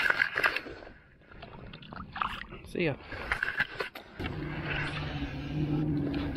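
Scattered knocks and water noises as a bass is let go over the side of a kayak. From about four seconds in, a steady low electric hum from the kayak's MotorGuide Xi3 trolling motor.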